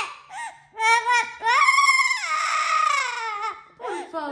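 Yellow-naped Amazon parrot imitating a crying baby: a few short sobbing cries, then one long wailing cry that falls away near the end.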